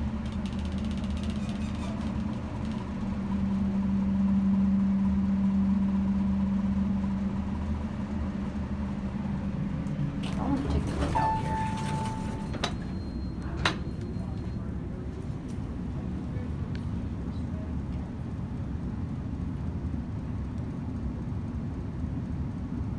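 A Westinghouse-modernized hydraulic elevator travelling, with a steady low hum from the hydraulic pump unit that is loudest in the first few seconds and dies away about ten seconds in as the car stops. A short higher tone and a sharp click follow a little later.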